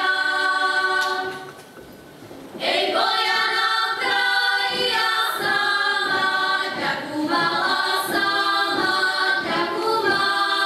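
A group of women in a folk ensemble singing a Slovak folk song a cappella in harmony, with long held notes. The singing breaks off for about a second early on, then the next phrase comes in.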